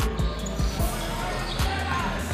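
Volleyball rally in a gym: several dull, irregularly spaced thumps of the ball being struck and players on the court, over background music.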